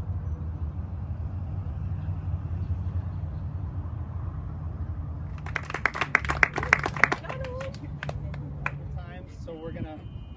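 A small group clapping quickly for about a second and a half, with a few last claps trailing off, in applause for a trophy being presented. Before that, a steady low rumble.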